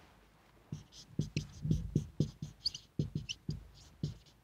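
Marker pen writing on a whiteboard. A quick, uneven run of short strokes starts just under a second in, each a soft knock of the tip against the board with a faint squeak as it drags.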